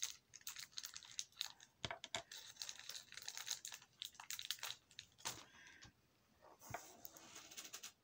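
Small, quick clicks and crinkles of jewellery and its packaging being handled, with a short lull near the end.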